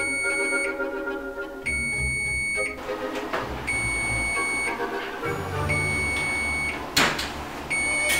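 Electronic oven timer beeping at the end of its countdown: one steady high beep about a second long, repeated every two seconds. A single sharp knock sounds about seven seconds in.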